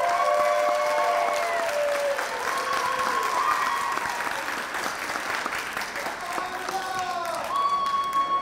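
Audience applauding a student called up for an award, with people in the crowd cheering in long held calls over the clapping.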